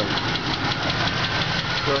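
Oldsmobile 350 V8 of a 1977 Cutlass Supreme idling, heard from over the open engine bay, with a fast, even ticking running through the idle. The owner says the engine needs a lifter and has an exhaust manifold leak.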